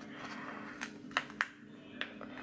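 Washi tape strips handled and lifted off a paper planner page: a soft papery rustle, then three light clicks about a second in, over a faint steady hum.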